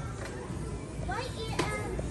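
A child's voice calling out in short rising squeals from about a second in, over a steady low background rumble.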